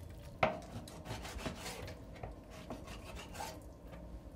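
Kitchen knife slicing raw chicken on a plastic cutting board: soft rasping cuts with light taps of the blade on the board, the sharpest about half a second in.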